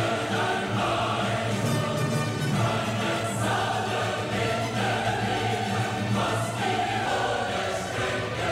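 Trailer score of orchestral music with a choir singing long, held notes.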